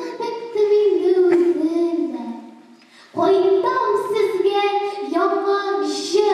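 A girl singing solo in long held notes that step up and down. She pauses a little after two seconds in, then resumes strongly about three seconds in.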